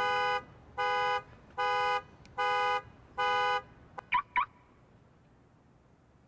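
Car alarm going off right after the music stops: five even, steady horn beeps, one about every 0.8 seconds, then two quick rising chirps.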